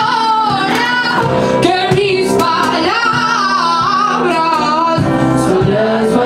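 Live band playing a song: a sung melody that bends and wavers in pitch, over electric guitar.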